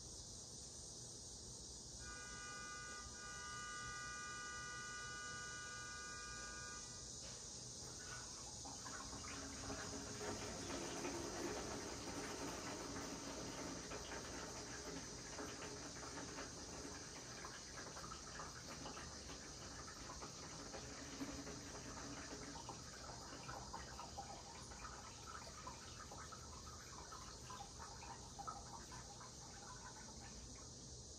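A man urinating into a plastic jug: a stream of liquid splashing into the container starts about eight seconds in, is strongest a few seconds later and tapers off near the end, over a steady high hiss. About two seconds in, a set of steady high tones sounds for about five seconds.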